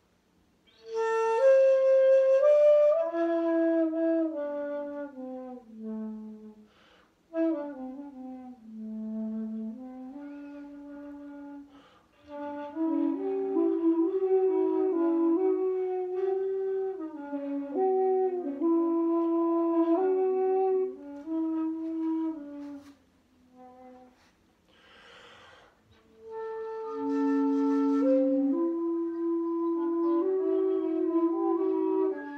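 Shakuhachi bamboo flutes playing slow phrases of held notes and downward-sliding notes, with short pauses between them. Through the middle stretch two flutes sound together. A breathy rush of air sounds a little before the end.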